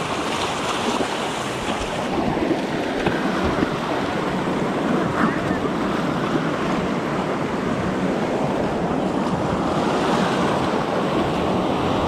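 Small shore-break waves breaking and washing through shallow water, a steady foamy rush of surf.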